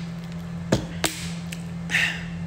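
Handling knocks from a plastic water bottle being lowered after a drink: two sharp knocks about a third of a second apart, then a short breathy sound near the end, over a steady low hum.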